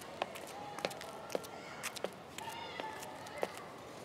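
Quiet canteen background: faint, indistinct murmur with scattered light clinks and taps of plastic trays and cutlery, about nine in all.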